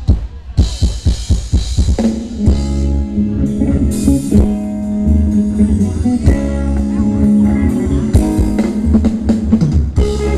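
Live band playing Thai ramwong dance music: a rapid drum fill opens, then about two seconds in the band comes in with held notes over a steady drum beat.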